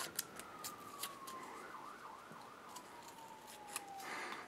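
Faint crinkles and clicks of a foil seal being peeled off the top of a tub of Frog Lube paste. Behind them, a faint tone slowly falls in pitch and wavers in the middle.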